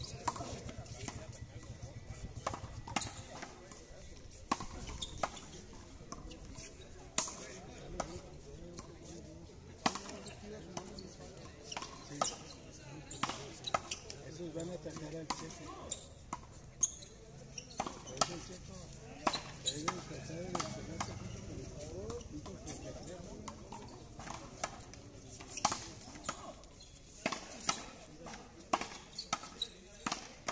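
Frontón ball smacking against the concrete wall and court in a rally: repeated sharp smacks at uneven intervals, with people's voices in between.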